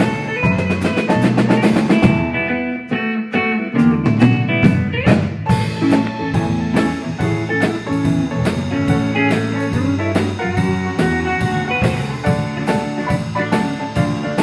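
Live band playing an instrumental piece: drum kit, electric guitar, bass and keyboard, with a steady beat.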